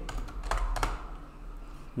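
A few keystrokes on a computer keyboard, the two clearest a little after half a second in, over a steady low hum.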